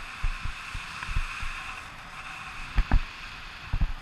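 Wind buffeting a camera's microphone in paragliding flight: a steady airflow hiss with irregular low thumps, the strongest about three seconds in and just before the end.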